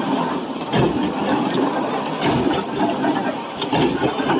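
Heavy steel chain links clanking and clinking against each other and against metal as the chain is worked through a chain-making machine, over a steady din of factory machinery, with frequent short knocks.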